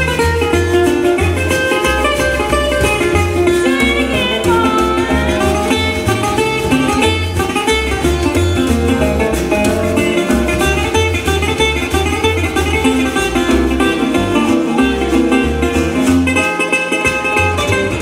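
A resonator guitar playing an instrumental blues passage, plucked single notes and chords, with pitch bends about four seconds in, over a steady low bass line.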